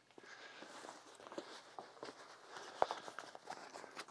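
Faint footsteps in sneakers across the floor and the soft handling of a foam exercise mat being picked up and unfolded, with one light knock a little before three seconds in.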